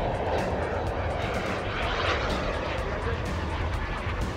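KingTech K-170 turbine of a radio-controlled SkyMaster BAE Hawk model jet in flight: a steady jet rush that swells about halfway through as the plane passes.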